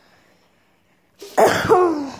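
A woman coughing, a short voiced cough breaking out a little over a second in.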